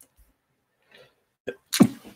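A man sneezes once, a loud, sharp burst about a second and a half in, just after a brief shorter sound.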